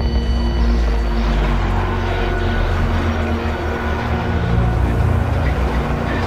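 A loud, steady low rumble under sustained droning tones, the kind of dark drone used in thriller trailer score and sound design.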